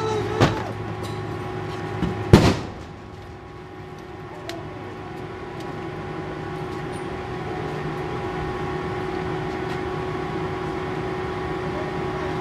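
Two sharp bangs about two seconds apart, the second the louder, as a tactical team forces a house door during a police raid. A steady mechanical hum runs underneath.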